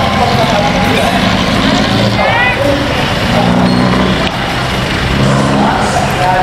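Busy city street ambience: road traffic running steadily under the voices of a crowd of people.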